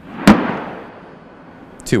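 A single sharp boom from 155 mm high-explosive direct fire, about a quarter second in, rumbling away over about a second.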